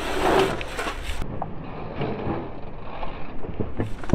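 Dirt jump bike on loose sandy dirt: tyre noise and wind rushing on the microphone, with a few sharp clicks near the end.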